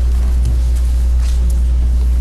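Loud, steady low hum in the meeting-room recording, with a few faint ticks over it.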